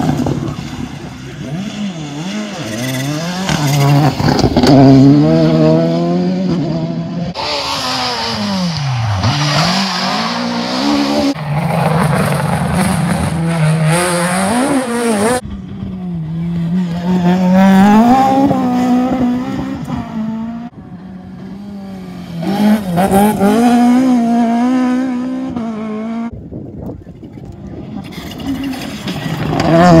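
Rally car engines revving hard through the gears. The pitch climbs, then drops sharply at each shift and under braking. The sound swells as cars pass close and fades between them, rising again near the end as the next car arrives.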